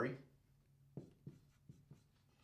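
Dry-erase marker writing letters on a whiteboard: about four short, faint strokes in the second half.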